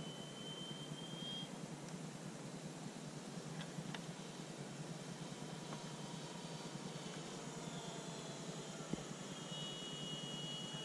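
Faint whine of a distant electric RC airplane, an FMS F4U Corsair with a 4258 650 KV brushless motor, flying high overhead. The thin high whine drifts slightly in pitch and is clearest in the first second or so and again near the end, over steady outdoor background noise.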